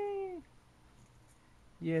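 A single drawn-out, high-pitched voiced call, held on one note and then falling in pitch as it ends about half a second in; quiet follows until speech begins near the end.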